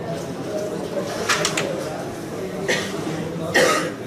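A person coughing once, sharply, near the end, over a low murmur of voices, with a few short clicks earlier on.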